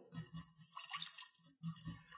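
Faint, light clinks and handling sounds as the steel stem of a dial probe thermometer is lowered among the ice in a glass of ice water.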